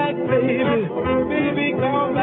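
A 1950s rhythm-and-blues vocal group record: group voices singing in harmony over a backing band, dull-sounding with no high end, as from an old disc transfer.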